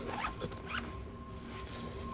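A backpack zipper pulled in about three quick strokes within the first second.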